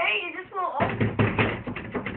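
A brief wavering vocal cry in the first second, over a fast run of sharp taps, several a second.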